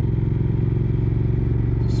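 Triumph Speed Twin's parallel-twin engine running steadily under way, the pitch holding even with no revving.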